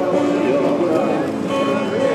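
Indistinct voices of passers-by talking, mixed with music in the background that has long held notes.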